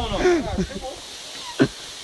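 A man's voice briefly, then a single sharp knock about one and a half seconds in, the loudest sound here.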